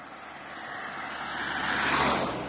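A car driving past on the road, its noise rising steadily and peaking as it goes by close to the microphone near the end.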